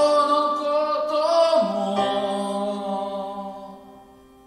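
A man singing long held notes over sustained keyboard chords in a live performance. The notes step down in pitch about one and a half seconds in, and the sound fades away near the end.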